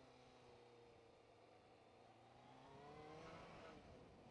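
Kawasaki ZZR600 motorcycle's inline-four engine, heard faintly, its pitch easing down and then climbing from about two and a half seconds in as the bike accelerates.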